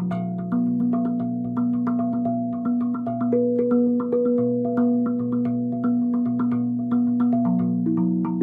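Steel tongue drum by Podmanik Singing Steel, tuned to B Celtic minor at 432 Hz, played with felt-tipped mallets in a quick, steady rhythmic groove. Each stroke leaves a ringing note that overlaps the next, so low tones sustain under the faster strikes.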